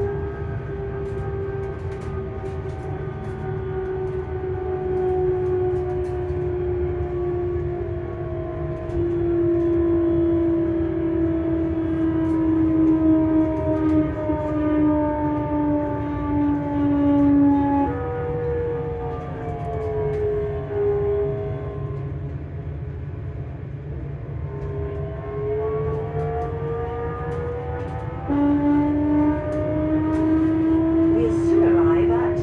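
Hitachi Class 385 electric train's traction motors and inverter whining over the rumble of the running gear, a stack of musical tones that glide in pitch with the train's speed. The whine falls steadily as the train slows, jumps up abruptly about halfway through, and falls a little more. It then rises as the train picks up speed, with another sudden step up near the end.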